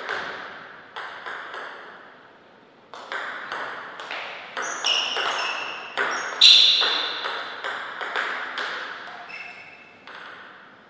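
Table tennis ball knocking on paddles and table. A few separate knocks come in the first second and a half, then, from about three seconds in, a rally of quick, even knocks about two a second that stops near the end.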